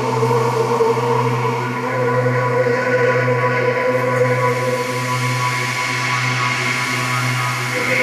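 Ambient electronic music played live: a slow, layered drone of long held tones over a steady low hum, changing little over the seconds.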